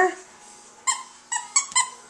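A dog chewing a squeaky plush toy, four short high squeaks in about a second, each coming sooner than the last.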